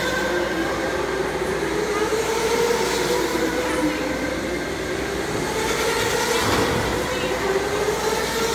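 Electric go-karts whining as they drive past on an indoor track. The motor pitch drifts up and down with speed, and a second kart's whine dips lower and rises again in the middle, over tyre noise on the concrete.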